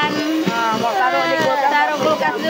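A high-pitched voice making drawn-out, gliding sounds, held notes that rise and fall like singing or playful vocalising.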